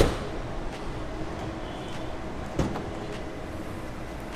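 Tesla Model 3 boot lid being opened: a sharp latch click at the start, then a second knock about two and a half seconds in as the lid comes up.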